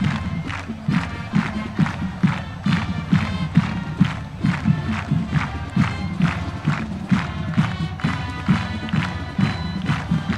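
High school marching band playing as it marches onto the field. Drums keep a steady, quick march beat under held brass chords.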